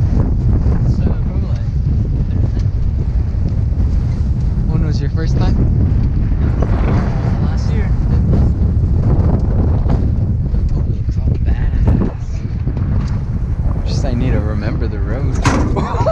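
Wind buffeting the microphone over the steady low rumble of a truck driving along a dirt forest road, with faint voices now and then.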